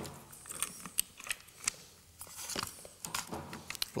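Light, irregular clicks and taps of plastic and metal as a pick presses in the plastic collet clip and the handbrake cable is slid free of a Land Rover electronic parking brake module.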